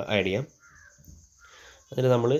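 A person's voice speaking briefly at the start and again right at the end, with only faint, brief sounds in the pause between.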